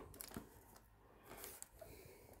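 Near silence, with a few faint clicks and a brief faint rustle about one and a half seconds in, the sound of a cardboard perfume box being handled.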